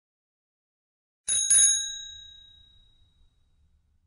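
A bell-like ding struck twice in quick succession about a second in, its bright ringing fading away over about two seconds.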